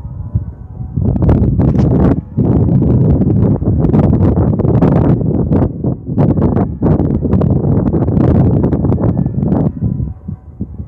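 Wind buffeting the microphone: a loud, gusting rumble that rises about a second in, surges in and out, and falls away near the end.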